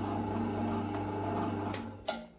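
Drill press motor running steadily with a low hum. A short click comes just before the end.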